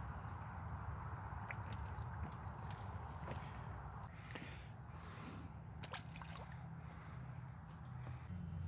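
Steady faint hum of distant freeway traffic, with scattered small clicks and ticks close by.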